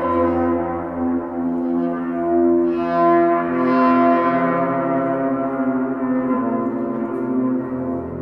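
Yaybahar played with a bow: its string, coupled through long coiled springs to two frame drums, gives a sustained, echoing drone thick with overtones. Its pitch shifts about three seconds in and again near six seconds.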